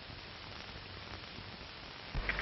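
Steady hiss of an old 1930s film soundtrack, with a low hum underneath and a few faint clicks.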